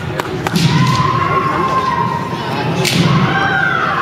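Kendo bout: sharp knocks and thuds of bamboo shinai strikes and stamping feet on a wooden gym floor, with a long drawn-out kiai shout held steady for nearly two seconds and another shout falling in pitch near the end.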